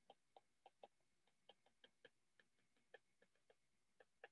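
Faint, irregular clicks of a stylus tip tapping on a tablet's glass screen while handwriting letters, about fifteen ticks unevenly spaced.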